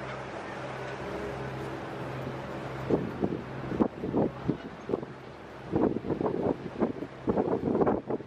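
Steady low drone of a river tourist catamaran's engines under the rush of wind across the microphone on the open deck, with short snatches of passengers' voices from about three seconds in.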